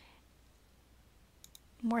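Near silence, a room tone with a low steady hum, broken about a second and a half in by two faint clicks. A woman's voice starts just after them.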